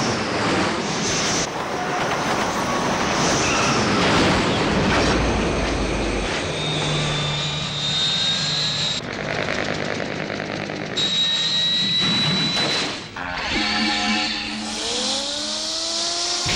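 Sound effects of a giant robot combining: a continuous dense run of mechanical and electronic noise with steady tones, ending in several rising tones.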